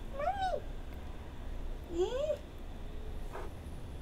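Two short, high, meow-like calls about two seconds apart: the first rises and falls in pitch, the second rises. A low steady hum runs underneath.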